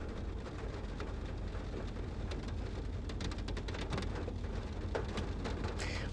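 Steady, low-level noise with many faint scattered ticks and crackles, like light rain on a surface.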